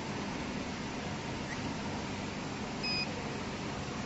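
A single short electronic beep from the packing machine's touch-screen control panel as a button is pressed, about three seconds in, over steady background noise.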